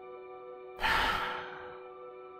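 Soft background music of steady held tones. About a second in, a man gives one long exhaled sigh that fades out within a second, a sign of impatience with an update stuck at 1%.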